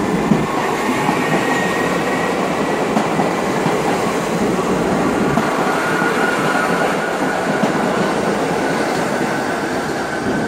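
R68A subway cars pulling out and passing close by at speed, a loud, steady rush of wheels on rails with a thin high whine over it that rises slightly near the end.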